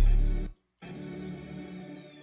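Beat playback: a loud sustained 808 bass note ends abruptly about half a second in. After a short silence, a dark synth pad comes in and holds steady, with a faint high sweep slowly falling in pitch.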